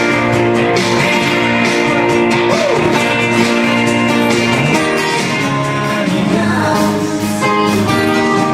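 Acoustic guitar played live, with a singing voice over it.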